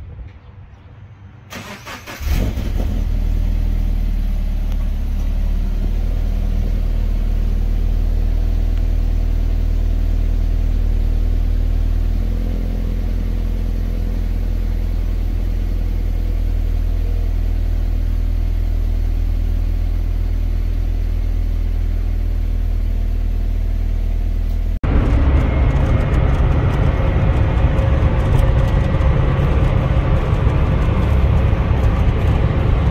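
Subaru BRZ's flat-four engine cold started at the exhaust: after a brief crank about two seconds in it catches and holds a steady fast cold idle, easing down slightly about halfway. Near the end the sound cuts to engine and road noise inside the cabin at highway speed.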